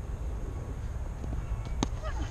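Wind buffeting an outdoor microphone, a low, uneven rumble, with one sharp click near the end.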